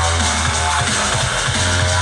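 Loud drum and bass DJ set played through a club sound system, with a heavy sustained bass line under fast drum beats.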